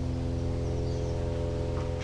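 A steady hum made of several held tones, with no change in pitch or level.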